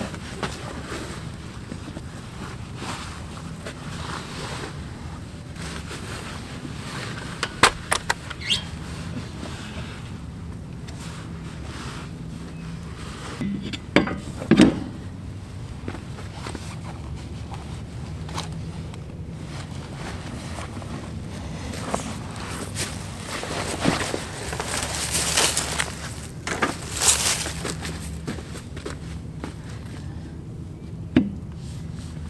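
Metal knocks and clanks as a tyre is fitted back onto a field cultivator's wheel hub: a few sharp knocks about a quarter and halfway through, then a run of clattering near the end, over a steady low rumble.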